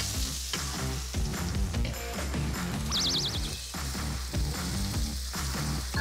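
Chicken feet sizzling in a hot wok as they are tipped in and stirred, under background music.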